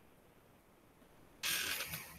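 Quiet room tone, then about a second and a half in a sudden, short scraping or rustling noise, loud against the quiet, lasting about half a second.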